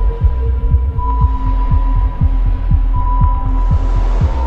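Dark ambient soundtrack music: a rapid throbbing low pulse, several beats a second, under sustained high drone tones.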